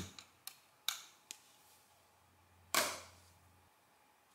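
Sharp mechanical clicks from a hand-worked industrial counter mechanism: a few light clicks in the first second and a half, then one louder clack with a short ringing tail just under three seconds in, as the counter is advanced and its flap is closed.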